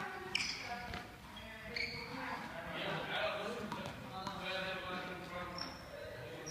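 Juggling balls being tossed and caught by hand, giving a few scattered sharp slaps and soft knocks in a large hall.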